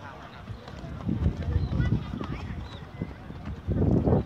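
Dull thuds of a player's running footsteps and touches on a football on grass close by, a quick irregular run of them about a second in and a louder thump near the end.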